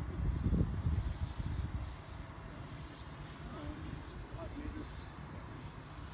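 Electric ducted-fan RC jet flying at a distance: a faint, steady high whine over a low rumbling noise.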